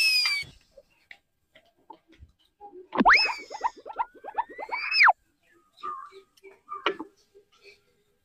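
Cartoon-style comedy sound effects. A whistle glide that rises and falls fades out about half a second in. About three seconds in, a boing-like effect jumps up, wobbles with quick repeated bounces, slides up again and cuts off near five seconds. Faint clicks follow.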